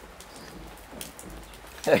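Bible pages being leafed through: soft paper rustles and a few faint clicks over a low background hiss.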